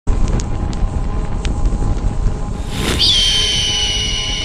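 Sound-effect intro: a steady low fire rumble with a few crackles, then a rising whoosh about two and a half seconds in. A high piercing tone follows and holds, dipping slightly in pitch.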